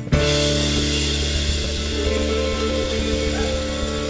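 A live rock band's closing chord: struck together with a drum hit right at the start, then held on electric guitars and bass as a steady ringing chord that slowly fades.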